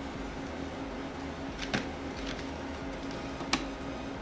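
A plastic toy basketball backboard being pressed onto a wall by hand, giving two short sharp clicks, one a little under two seconds in and one near the end, over a steady low hum.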